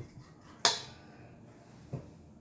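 A single sharp clink with a short ring, a little over half a second in, as a cup of flour is tipped out and scraped with a spoon over a stainless steel mixing bowl; a faint knock follows near the end.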